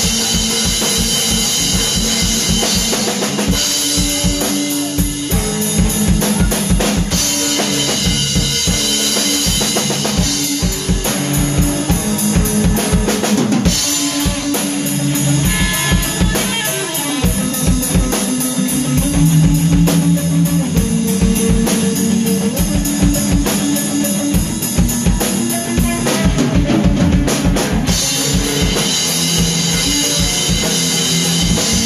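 A live rock band playing: a drum kit with a steady bass-drum and snare beat and ringing cymbals, with electric guitars over it. The cymbals ease off briefly near the end.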